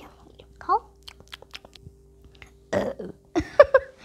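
A burp sound from a child's voice, loud and short, a little under three seconds in and again just after, amid light clicks and taps of small plastic toy dishes and dolls being handled.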